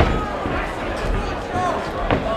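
Crowd voices shouting in a large hall during a boxing bout, with one sharp thud right at the start as a gloved punch lands.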